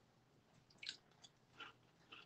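Near silence broken by a few faint short sounds of a person chewing a mouthful of crisp waffle, about a second in and again past the middle.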